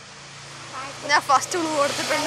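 A girl's voice making short, pitch-bending vocal sounds, beginning a little way in, over a faint steady low hum.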